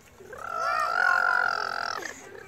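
A child's long, high-pitched yell. It starts about half a second in, rises briefly and is held steady until it stops near the end.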